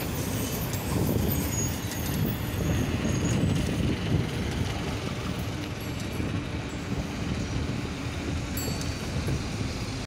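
Steady road-traffic noise from slow, jammed city traffic (cars and buses), with a low, uneven rumble of wind on the microphone of a camera carried on a moving bicycle.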